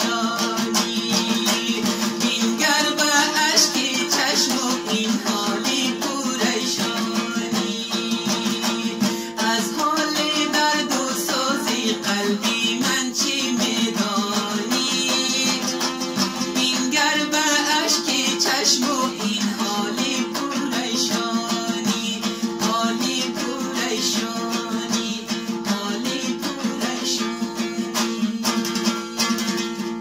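Dambura, an Afghan long-necked lute, strummed rapidly in a continuous folk melody, joined at times by a man's singing voice; the music drops away right at the end.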